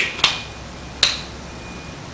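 Two sharp clicks, about three quarters of a second apart, with a brief rustle just before them, from gloved hands handling and pressing down the adhesive strip and backing of a cannula dressing.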